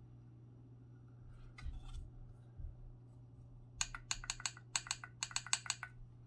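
Handling noise from the MFJ-553 straight telegraph key, then its lever being worked by hand: about a dozen sharp mechanical clicks of the key's metal contacts over two seconds, with no sidetone.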